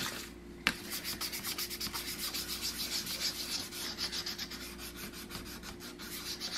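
Sanding stick scraped rapidly back and forth over the paper-covered edges of a rat trap, about five strokes a second, roughing up the paper to distress and age it. A single click comes just before the sanding starts.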